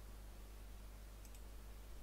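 Near silence with a low steady hum, and a couple of faint clicks about a second in.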